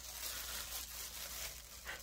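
Disposable plastic gloves crinkling and rustling softly as hands pull apart a piece of roasted Cornish hen.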